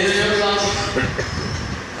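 A man speaking into a microphone, his amplified voice heard with noise from the hall behind it, falling off near the end.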